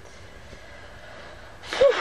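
Quiet room tone, then near the end a woman's loud, breathy sigh.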